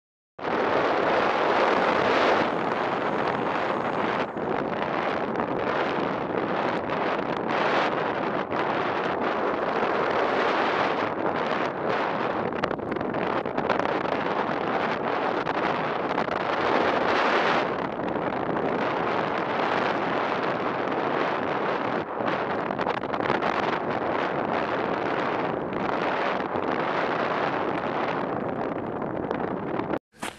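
Wind rushing over a small onboard camera's microphone on a hobby rocket, a steady rough noise that starts abruptly just after the beginning and holds throughout.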